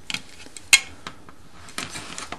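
Small clicks and taps of a plastic LED light housing and its circuit board being handled by hand, with one sharp click just under a second in.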